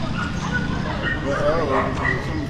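A few short yelping animal calls about a second and a half in, over background voices and a steady low rumble.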